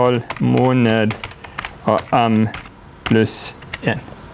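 Typing on a computer keyboard: many scattered key clicks as code is entered, with short spoken words from a man in between.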